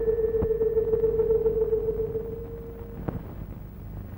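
A single steady tone, held for about three seconds and then stopping, over the low hum and hiss of an old film soundtrack, with a couple of faint clicks.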